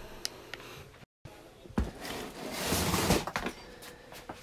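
Handling noise: a sharp knock, then a second or so of rustling and scraping with small clicks, as the phone camera is picked up off its holder and moved. A brief dead gap about a second in breaks the sound.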